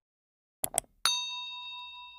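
Two quick mouse-click sound effects, then a bell chime, the ding of a notification bell, ringing out with several clear tones and fading away over about two seconds.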